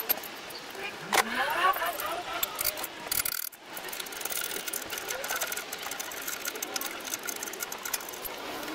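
Hand tools clicking and clinking on metal as an engine is dismantled, with a voice in the background.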